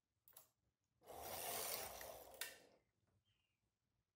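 Silver Reed knitting machine carriage pushed across the needle bed to knit a short row in hold position. It slides with a rushing sound for nearly two seconds and ends in a sharp knock. A brief click comes just before, as a needle is pushed forward by hand.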